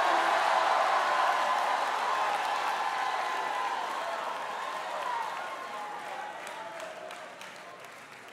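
Church congregation cheering and applauding in response to a call to shout, the crowd noise dying away steadily.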